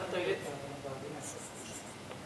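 A voice trailing off, then low talk in a room, with a few short, high scratchy rustles a little after the middle.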